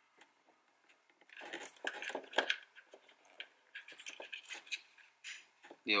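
Scattered light plastic clicks and rattles from a car door's window switch panel and its wiring connector being handled and plugged in, starting about a second and a half in.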